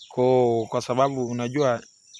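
Crickets chirring in a steady high trill, under a man's voice that stops near the end.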